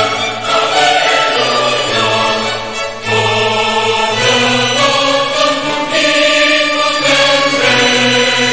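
Background choral music: slow, sustained chords from a choir.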